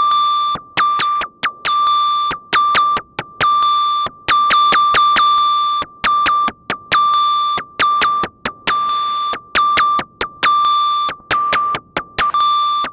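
Moog DFAM analog percussion synthesizer running its step sequencer: a repeating pattern of high, beep-like notes at one fixed pitch, each starting with a click, some cut short and others held longer.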